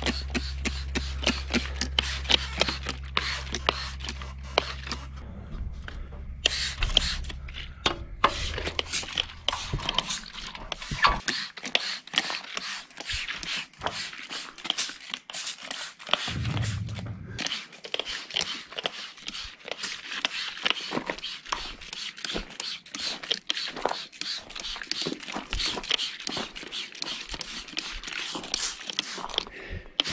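Hand spray bottle squirting WD-40 onto welded steel wall panels in rapid, repeated short hissing squirts, several a second. A low hum underneath stops about a third of the way through.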